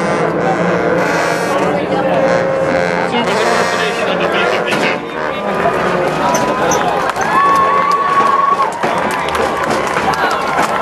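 Many voices chattering and calling out at once from a large crowd of sousaphone players, with a few long held notes cutting through, the longest about seven seconds in.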